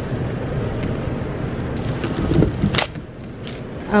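Handling and rolling noise: a thin plastic food-safety bag pulled off a roll and rustled around a pack of chicken, with sharp crackles about two to three seconds in, and a shopping cart rolling.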